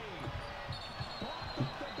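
Faint basketball game broadcast audio: a ball bouncing on the hardwood and scattered sneaker squeaks over a low arena murmur, with a brief high squeak a little before the middle.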